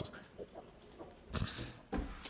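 A pause in a man's speech, mostly quiet, with one short, faint breath about a second and a half in.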